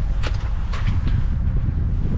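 Wind buffeting the microphone in a steady low rumble, with a few light knocks.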